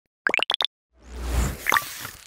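Title-animation sound effects: four quick pops rising in pitch, then a swelling whoosh over a deep low rumble that peaks about three quarters of a second in, with a short bright click near the end.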